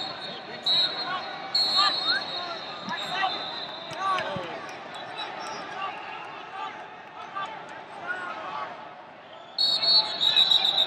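Wrestling arena during a match: shouting voices and shoe squeaks on the mat throughout, over a steady hall din. Short shrill whistle-like blasts sound about a second and two seconds in. A louder run of them starts just before the end, as the period clock reaches zero.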